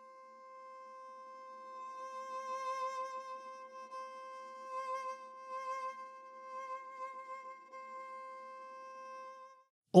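Sampled solo viola, muted (con sordino), holding one soft, static non-vibrato note. Small pulses of vibrato and volume swell through it a few times, and the note stops just before the end.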